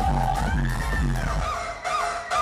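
Live electronic hip-hop music played loudly over a concert PA: a bass beat with falling bass notes about three times a second, with a high gliding tone above it. The beat cuts out about one and a half seconds in.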